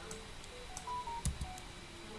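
A few faint clicks of a computer keyboard and mouse while a spreadsheet formula is edited. Several short, faint beeps at differing pitches sound between them.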